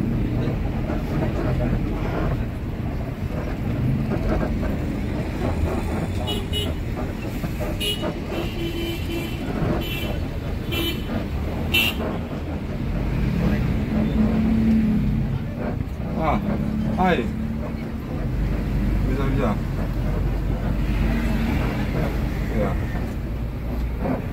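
Inside the cab of a moving intercity coach: the engine and road noise run steadily. A series of short horn toots sounds from about a quarter of the way through to the middle.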